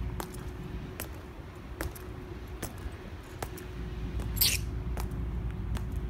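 Marching footsteps of a Tomb Guard sentinel: the shoe heels click sharply on the stone plaza, about one step every 0.8 seconds, over a low outdoor rumble and a faint steady hum. One brief, louder, hissing clink comes about four seconds in.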